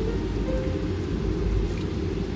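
Water boiling in a pot with ginger slices in it, a steady low rumbling bubble, with background music playing over it.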